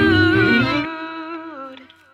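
The close of a contemporary Christian pop song: a drawn-out hummed vocal note over the backing track. The beat and bass cut out about a second in, and the last held notes fade away.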